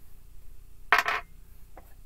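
A single sharp clink about a second in, a ceramic mug being set down on a hard tabletop, with a brief ring after it.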